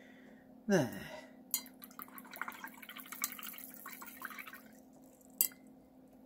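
Paintbrush being swished and tapped in a glass jar of rinse water: a few seconds of small splashes and clinks, then one sharp knock near the end.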